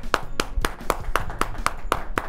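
Hand claps in a steady rhythm, about four a second.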